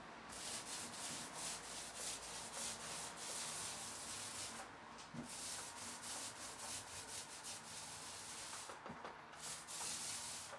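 A 4-inch paint roller loaded with wet paint rolling up and down over primed vinyl wallpaper: a faint, rhythmic rasping swish repeated a few times a second, with brief pauses about halfway through and near the end.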